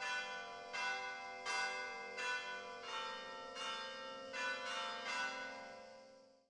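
Bells ringing in a series of strikes, a new one about every three quarters of a second, each tone ringing on under the next; the ringing fades near the end.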